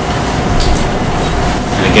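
A low, steady rumble with a faint hum running under it, with no clear strokes or rhythm.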